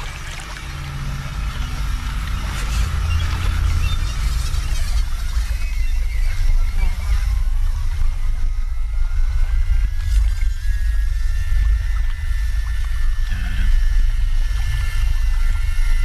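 Film soundtrack: a low rumbling suspense drone that swells in the first few seconds and holds, with thin steady high tones joining about halfway, over faint water sloshing from people wading.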